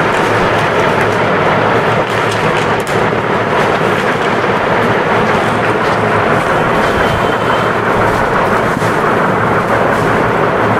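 Loud, steady rushing noise with no clear pitch or rhythm.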